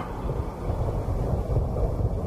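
A steady, dark, low rumbling drone with no beat, part of the electronic track's beatless ambient outro under the spoken samples.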